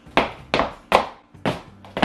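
Stiletto heels of Stuart Weitzman pumps striking a wood-look floor in quick, uneven clicks, about five sharp strikes in two seconds: playful tap-dance steps in high heels.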